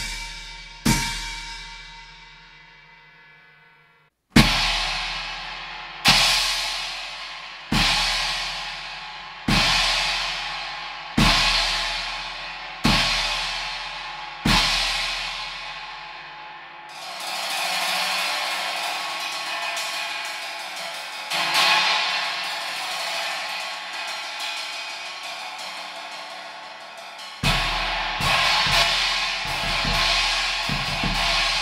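China cymbals played on a drum kit, with their aggressive, trashy tone: first single crashes, each with a bass-drum kick, about every 1.7 s. About halfway through they change to a continuous ringing wash with a couple of accents, and near the end to a busier beat with bass drum.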